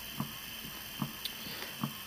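Three soft knocks, about 0.8 s apart, over a steady background hiss.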